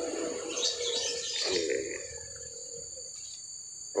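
Steady high-pitched chirring of insects in the background, with faint rustling and a short murmured voice sound in the first two seconds.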